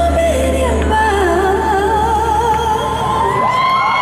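Live pop ballad with a female lead vocal singing with vibrato over a full band, heard through a hall's sound system. About three seconds in the bass drops out and the voice holds a long note.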